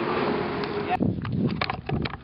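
Skateboard wheels rolling on concrete, a steady rumble that cuts off abruptly about a second in, followed by quieter outdoor sound with a few light clicks.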